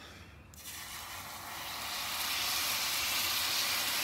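Salsa verde poured into a hot skillet, sizzling as it hits the pan. The sizzle starts about half a second in and grows steadily louder as more sauce goes in.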